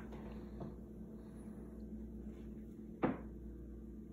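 A single sharp metal clack about three seconds in, over quiet room tone: the barrel of a homemade break-action shotgun snapping shut against its receiver.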